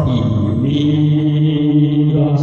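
A man's voice singing a hymn in long held notes, with a pitch dip and a glide back up about half a second in.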